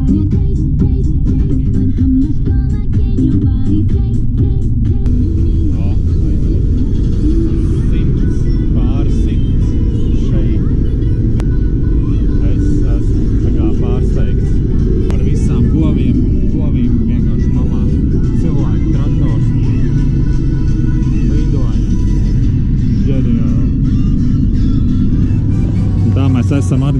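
Steady engine and road noise inside a moving car's cabin, with music and voices over it.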